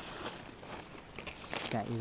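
Dry fallen leaves crinkling and rustling as a hand pushes into the leaf litter on the forest floor.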